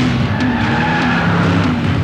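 A car speeding off with its tyres skidding, over background music.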